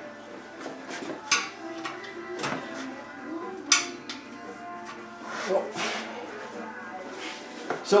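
A few sharp metallic clinks and clanks of hand tools and steel suspension parts being handled, the sharpest about halfway through, with quieter handling noise between.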